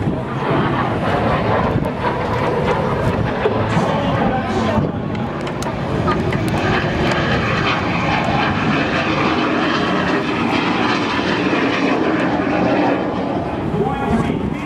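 Jet engine noise from a Lockheed T-33 Shooting Star trainer flying passes overhead, loud and sustained, growing somewhat brighter in its second half.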